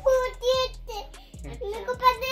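A young child singing in a high voice, a run of short held notes with a brief break in the middle.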